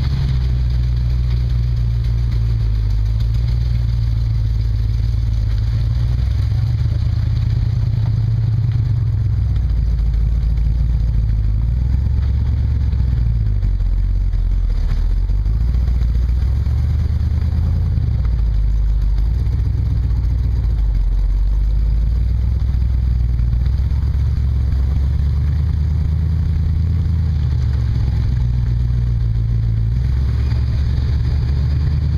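Dodge Power Wagon's engine running at low speed as the truck crawls through mud, its pitch rising and falling with the throttle.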